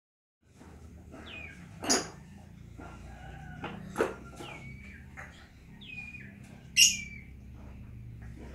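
Birds chirping with short falling calls, over three loud sharp knocks about two seconds apart, the hard plastic toy motorbike being swung and banged about.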